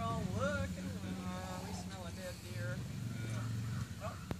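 A person's voice calling out in drawn-out, pitch-bending calls, over a steady low hum.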